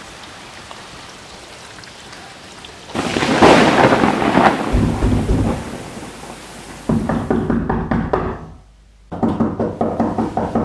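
Thunderstorm: steady rain, then a loud thunderclap about three seconds in that rolls into a deep rumble, followed by more heavy rain or thunder near the end.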